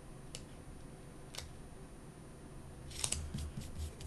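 Quiet handling of a paper planner sticker: two small crisp ticks as it is peeled from its backing and pressed down. About three seconds in comes a short burst of paper rustle and a soft bump as the planner is shifted.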